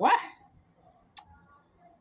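A man's voice exclaiming "What?" with a sharp upward rise in pitch, then a single short click just over a second in.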